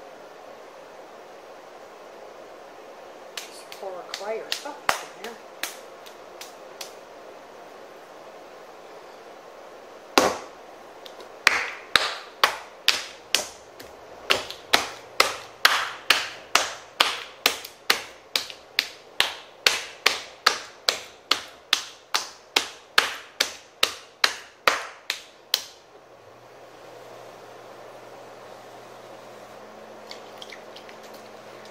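Wet clay on a potter's wheel head: some lighter knocks, then one heavy thump as the lump is thrown down, then the clay slapped by hand about twice a second for some fifteen seconds to slap-center it into a cone. Near the end the wheel's motor starts with a low, steady hum.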